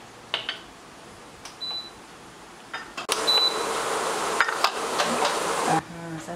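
A spatula clicking and scraping against a wok of prawns in coconut milk. About three seconds in, a steady hiss of the coconut-milk gravy cooking starts and stops suddenly near the end. Two short high beeps sound, one in the quieter first half and one just after the hiss starts.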